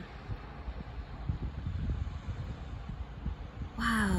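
Wind on the microphone: a low rumble with uneven gusts and a faint hiss, with a voice starting at the very end.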